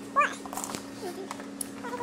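A short squeaky cry that bends up and down in pitch just after the start, the loudest sound here, with a fainter, lower cry about a second later. Under it run a steady hum and light clicks of handling.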